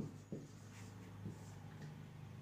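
Marker pen writing on a whiteboard: faint scratching strokes with a couple of soft ticks as the tip touches the board.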